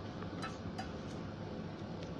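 Steady low room noise with three faint, light clicks a third of a second or so apart near the middle.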